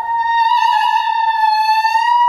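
Unaccompanied soprano holding one long high note, steady in pitch with a slight vibrato.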